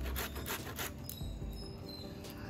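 Red carrots being grated on a metal box grater, a quick run of scraping strokes that stops about a second in.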